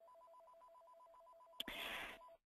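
Faint electronic two-tone warble, a higher and a lower tone alternating rapidly like a telephone ringer, then a click about one and a half seconds in followed by a brief hiss.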